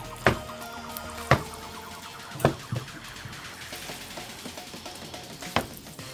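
Kitchen tongs knocking against a skillet about five times, separate sharp clacks, while tossing sauced pasta and mushrooms. Soft background music runs underneath.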